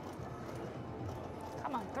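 Low, steady background din of a casino floor, then a woman's voice saying "come on" near the end.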